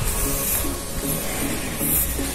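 Background music with a steady beat, with a hiss over it that swells briefly near the start and again near the end.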